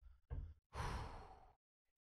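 A person sighing: one breathy exhale that fades away over under a second, after a brief soft sound just before it.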